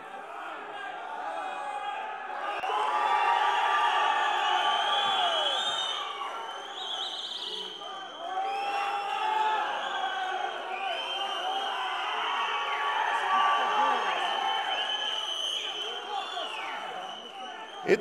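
Audience shouting and cheering for bodybuilders posing on stage, many voices overlapping, with two louder swells.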